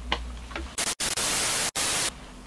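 TV static sound effect edited in as a transition: a loud, even hiss of white noise starting just under a second in, cutting out twice for an instant and stopping abruptly at the end. A few faint clicks come before it.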